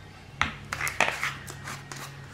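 A few light, irregular clicks and knocks of a plastic Mod Podge jar and scissors being handled on a tabletop.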